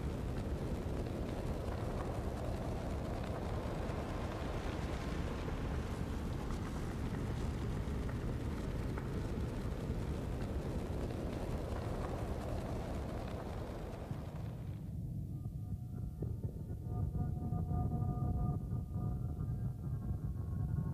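Ambient documentary soundtrack: a steady rumbling, hissing wash of sound, which about fifteen seconds in gives way to a low drone with several soft held tones.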